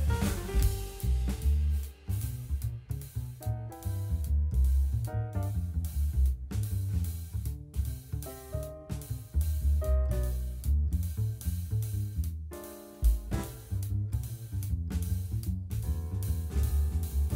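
Instrumental background music with a drum-kit beat, a heavy bass line and short melody notes, pausing briefly near the end.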